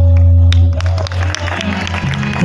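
Tabla and harmonium playing: a deep tabla bass stroke rings on with the held harmonium notes, which fade out about a second in, followed by scattered sharp tabla strokes.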